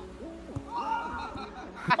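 Young men's voices hooting drawn-out 'ooh' and 'oh' sounds and chuckling, with laughter growing louder near the end.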